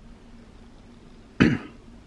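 Quiet room tone with a faint steady hum, broken about one and a half seconds in by a single short cough.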